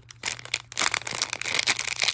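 Foil blind-bag wrapper crinkling and crackling as fingers pull it open by its tab. The crackle is rapid and irregular, and gets busier after the first half second.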